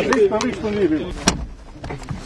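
Men talking, then a single sharp click a little past the middle as a car door is shut, followed by a low car rumble.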